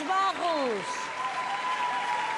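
Large audience applauding. Over the applause, a pitched voice-like sound falls in pitch during the first second, then a steady high tone is held.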